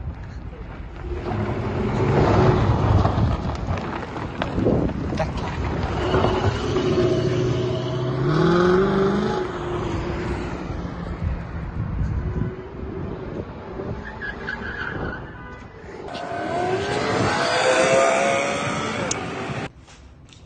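A Ford Mustang convertible accelerating hard away, its engine revving in several rising sweeps, with tyres skidding and squealing.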